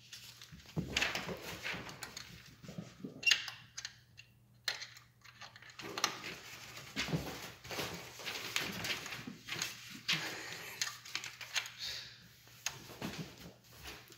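Two cats play-fighting on a tile floor: scattered, irregular clicks of claws skittering on the tiles and the rustle and crinkle of a white wrapping sheet under them as they scuffle.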